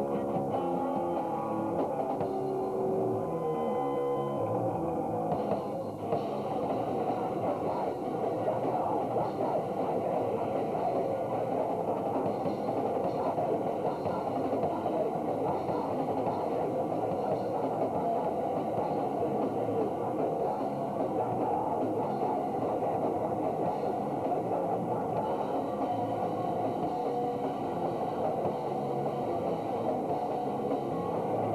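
Punk band playing live with electric guitar, bass and drums. For the first few seconds a guitar holds ringing notes; after a short break about six seconds in, the whole band plays on loud and dense.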